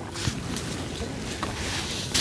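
Low steady rumble of light wind on the microphone, with a brief rustle about a quarter second in and a small click near one and a half seconds, as food and utensils are handled.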